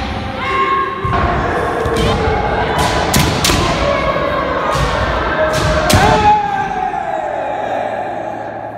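Kendo sparring: sharp cracks of bamboo shinai strikes and stamping footwork thuds from several pairs at once, with drawn-out kiai shouts. One long kiai about six seconds in rises and then falls away.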